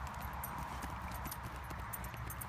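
Small dog digging at a burrow in dry ground: quick, irregular scratching of paws in loose earth with rustling dry grass.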